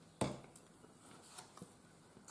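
A single soft tap about a quarter second in, followed by a couple of faint small ticks over quiet room tone.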